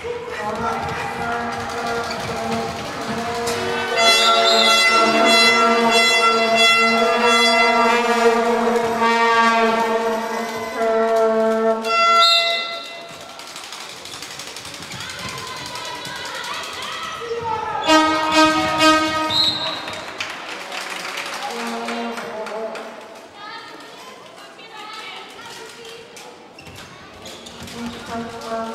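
Horns blown in long, steady held notes, several sounding at once for several seconds at a time, with pauses between, among voices in a large hall.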